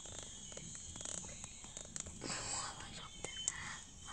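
Quiet handling noise: a few faint clicks and rustles, with a short soft whisper a little past halfway.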